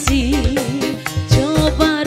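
Live dangdut band music: a steady drum beat with a wavering, vibrato-laden melody line on top.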